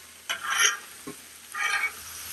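Metal spatula scraping across the steel top of a Blackstone griddle twice, pushing vegetables around, over the steady sizzle of chicken and vegetables frying.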